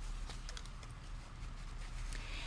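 Faint handling noise: light rustles and small taps of fabric, paper and a cloth bag being moved on a table, over a low steady hum.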